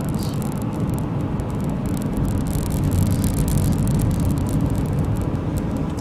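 Steady road noise of a moving car, heard from inside the cabin, a little louder from about halfway.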